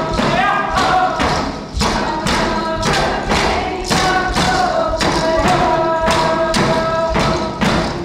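Traditional Unangan (Aleut) song: voices singing long held notes over a steady drumbeat of about two strokes a second.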